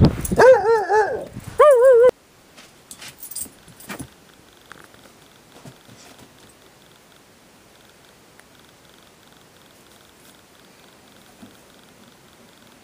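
Young redbone coonhound baying: a loud, drawn-out howl that wavers in pitch, cut off after about two seconds. After that it is quiet, with a few faint taps and shuffles.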